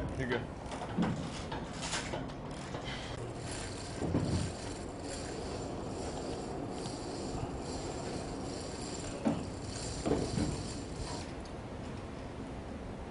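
Intermittent metal clanks and clicks from missile-handling gear, with heavier knocks about four seconds in and again near nine to ten seconds, over a steady background rumble and indistinct voices.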